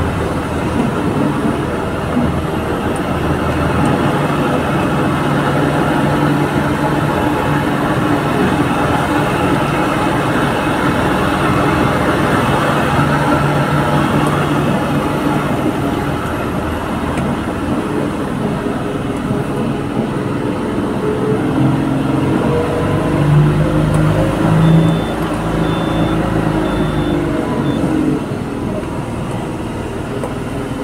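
Laden dump truck's diesel engine running, heard from inside the cab as it drives along a quarry track. Near the end the engine note rises and falls, with two louder surges, and four faint short high beeps sound.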